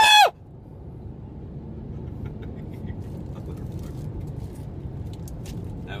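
A loud, short scream with a falling pitch right at the start, then the steady low rumble of a pickup truck's cabin on the move, engine and road noise slowly growing louder.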